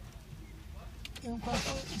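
Low, steady rumble of a car idling, heard from inside the cabin with the window open; a voice starts talking a little over a second in.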